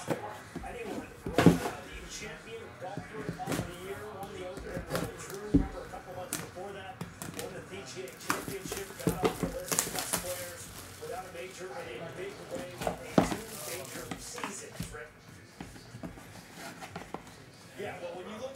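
Cellophane wrap crinkling as it is torn off a graded card slab, with scattered sharp clicks and knocks from the hard plastic slab and its box being handled. A faint voice, likely a TV broadcast, runs underneath.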